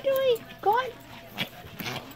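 Small dogs tussling over a plush snake toy, giving two short whines, the second rising quickly in pitch, then a couple of brief scuffling knocks.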